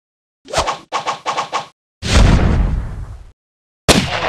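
Logo-intro sound effects: a quick run of about six sharp hits, then a heavy low boom that fades away over about a second, and a sharp crack near the end.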